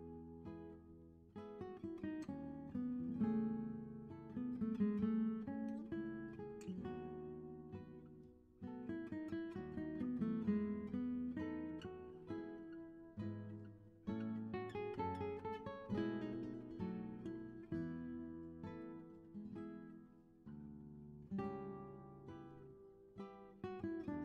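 Acoustic guitar playing a slow worship-song accompaniment, chords plucked and strummed, letting them ring and fade before striking the next.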